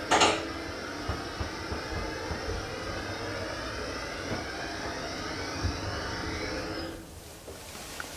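KONE-modernised hydraulic elevator travelling between floors: a steady mechanical hum and whine from its drive, with a sharp knock just after the start. The hum stops about seven seconds in as the car comes to rest.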